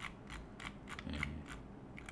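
Faint, irregular clicks, about six or seven in two seconds, from a computer mouse's scroll wheel as a web page is scrolled down.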